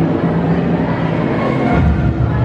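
Loud, steady low rumble with held low tones, played back over the stage sound system as the performance's soundtrack.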